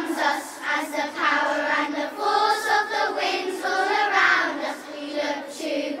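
A children's choir singing a song, voices holding notes through the sung lines.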